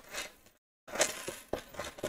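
Metal chain bag strap rattling faintly as it is lifted and moved across a table, in a few short spells of clinking and scraping.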